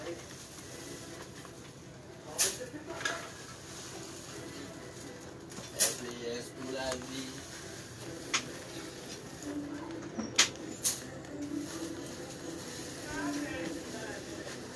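Low background voices with five sharp clicks scattered through.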